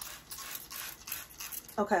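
Handheld trigger spray bottle misting water onto wet, shampooed hair, a run of quick hissing sprays that stops just before the end.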